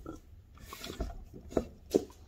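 Soft handling and rustling of a plush toy's fabric wrap, with a few short soft bumps, the loudest near the end.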